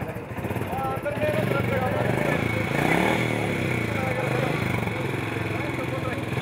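A Royal Enfield Bullet motorcycle's single-cylinder engine running, its revs rising and falling about halfway through, with people talking over it.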